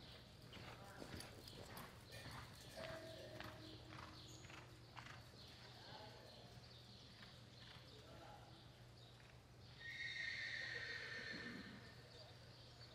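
Faint hoofbeats of a reining horse loping on soft arena dirt, over a steady low hum. About ten seconds in comes a louder, high, drawn-out call that lasts over a second.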